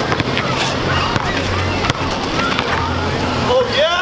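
Steady hum of city traffic on an outdoor basketball court, with a few short knocks of a ball bouncing on the asphalt during a drive to the basket. A brief pitched call or squeak comes near the end as the hum fades.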